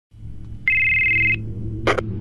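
A single short electronic telephone ring: two high steady tones sounding together for under a second, over a low steady drone. A short sharp sound follows near the end, just before the police dispatcher answers.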